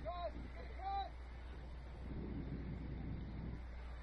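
Two short, high-pitched shouts about a second apart, each rising and falling in pitch, from players or spectators on the field. A low wind rumble and faint distant voices run underneath.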